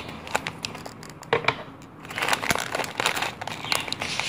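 Clear plastic bag of sunflower seeds and mixed bird seed crinkling as it is handled and cut open with scissors, with many sharp irregular clicks and crackles.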